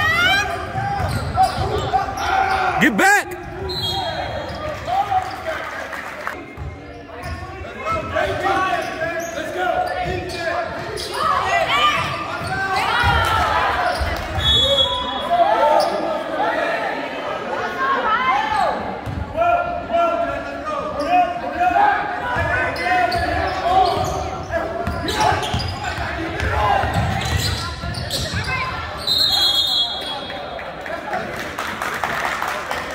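A basketball bouncing on a hardwood gym court during play, under the chatter and calls of spectators and players in a large gymnasium. A few brief high squeaks come through, and a sharp knock about three seconds in.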